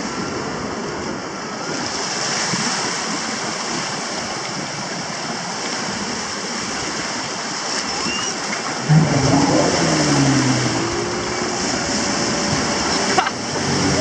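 Surf washing in over the shallows of a sandy beach, a steady rush of waves, with voices joining about nine seconds in.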